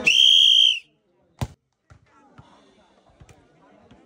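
A short, shrill whistle blast lasting under a second, then a single thump of a bare foot kicking a football about a second and a half in.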